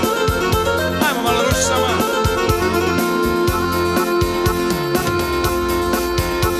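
Yamaha Tyros 4 arranger keyboard playing a lively instrumental with a steady beat and bass line.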